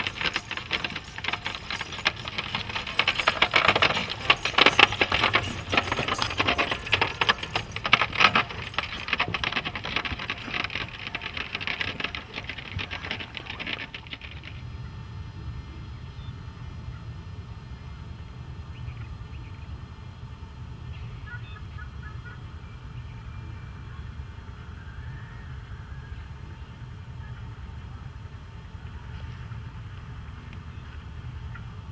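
Camel cart going past: dense, rapid jingling and rattling from the cart and the camel's harness, loudest a few seconds in, that stops about halfway through. After that only a low steady hum remains, with a few faint chirps.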